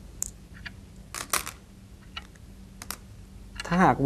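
Go stones clicking as a hand picks several stones up off a wooden board: a handful of sharp clacks, three of them close together about a second in.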